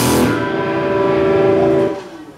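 A punk band's final chord ringing out on distorted electric guitars and bass through the amps after the drums stop a moment in, then cut off sharply just before the end.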